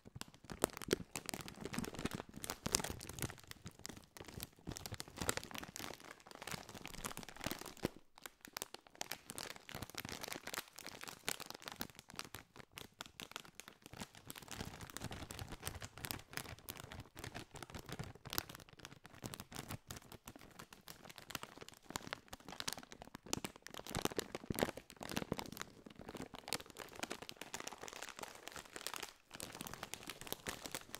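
A Doritos snack bag of metallized plastic film crinkled and squeezed by hand close to the microphone: a continuous run of dense crackles, with short pauses about eight seconds in and just before the end.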